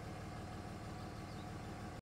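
A faint, steady low hum of a vehicle engine idling.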